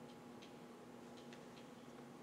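Near silence: faint room tone with a steady low hum and a few faint, irregular small ticks.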